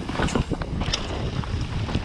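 Mountain bike descending a dirt forest trail at speed: tyres rolling over the ground with irregular rattles and knocks from the bike over bumps, under a steady low rush of wind on the microphone.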